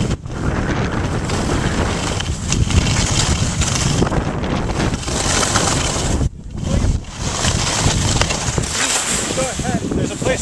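Wind rushing over the microphone of a camera carried by a skier moving downhill, mixed with the scraping hiss of skis on snow; a loud, steady rush that drops out briefly about six seconds in.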